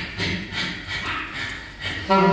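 A quiet passage of live jazz: soft, breathy pulses about four to five a second, with no clear saxophone notes in between.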